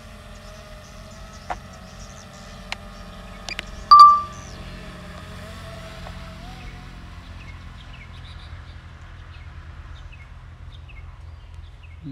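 Steady propeller buzz of a DJI Mini 3 drone in flight, fading after about six and a half seconds as it flies away. A few sharp clicks, then one bright ding about four seconds in, the loudest sound.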